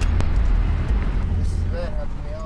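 Low, steady vehicle rumble with a hiss of outdoor traffic noise, slowly fading; a faint voice comes in near the end.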